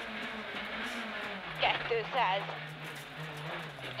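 Honda Civic Type-R R3 rally car's four-cylinder engine, heard from inside the cabin. It runs at steady revs, then its note steps down about a third of the way in and holds lower.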